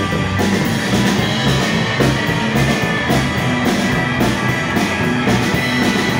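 Psychobilly band playing live and amplified: an instrumental passage of hollow-body electric guitars, upright bass and a drum kit keeping a steady, driving beat, with no singing.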